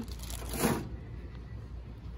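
A brief rustle of plastic packaging about half a second in, over a steady low hum.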